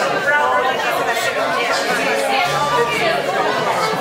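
Many people chatting at once in a large hall, with a few held instrument notes in the background, one low note lasting about a second past the middle.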